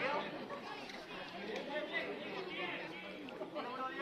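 Indistinct chatter of several voices talking over one another among the ringside onlookers.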